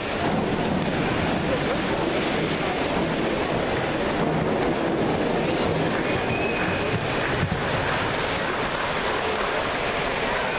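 Steady rushing, hiss-like background din of an indoor diving pool hall.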